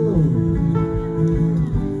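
Two acoustic guitars played live and amplified through a large outdoor PA system, their chords ringing steadily between sung lines.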